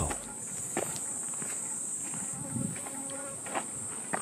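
Footsteps of a hiker in trail shoes on a dry dirt path with pine needles, about one step a second, under a steady high-pitched drone of summer insects.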